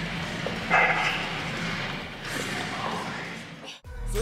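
A woman laughing breathily in a few short bursts over a faint steady room hum; the sound cuts off suddenly near the end.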